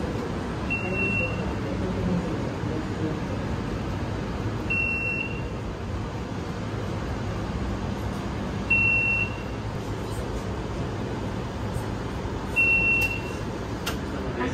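A short, high electronic beep repeating about every four seconds, four times, from the on-board signalling of a stationary electric tram. It sounds over the steady low hum of the tram's interior.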